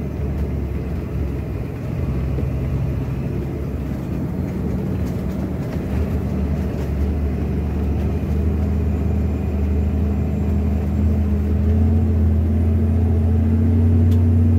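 Scania truck's diesel engine heard from inside the cab, pulling steadily under load through sandy track. Over the last few seconds it grows louder and slightly higher in pitch as it accelerates.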